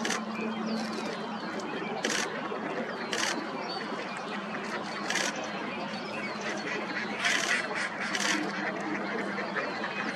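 A beaver gnawing on a plant root it has pulled from the lake bed, with short sharp crunches at irregular intervals. Ducks quack in the background.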